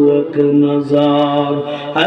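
A man chanting an Islamic supplication (munajat) in slow, long-held melodic notes.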